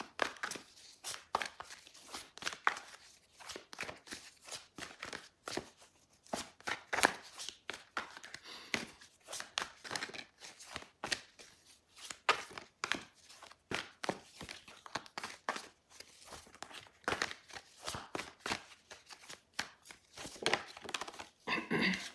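A tarot deck being shuffled by hand: a long run of quick, irregular card snaps and taps.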